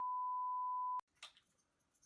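A steady, pure electronic beep tone about one second long that cuts off abruptly with a click, followed by a second of near quiet with a faint short rustle.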